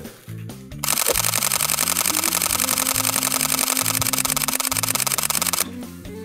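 Sony a6000 mirrorless camera firing a continuous burst of shutter clicks. The clicks are rapid and even, about ten a second, and start about a second in and stop shortly before the end. Background music plays underneath.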